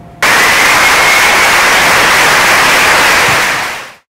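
Loud burst of steady static-like hiss that cuts in suddenly and fades out just before the end, with a faint thin whistle running through it.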